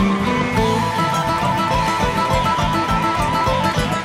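Live band playing an instrumental passage of a huayno: acoustic guitars carry the melody over a steady beat, with no singing.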